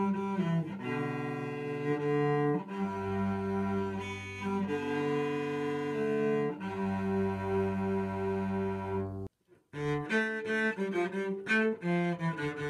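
Solo cello bowed by a learner about a year into playing. It plays long held notes, each a couple of seconds, then breaks off briefly about three-quarters of the way in and resumes with shorter, quicker notes.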